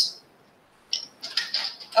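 Light clinks and knocks of glassware and bar tools being handled on a bar top, starting about a second in after a brief silence.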